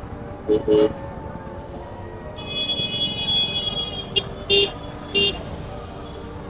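Vehicle horns honking in street traffic: two short toots about half a second in, a long steady high-pitched horn in the middle, then three more short toots, over the steady noise of traffic.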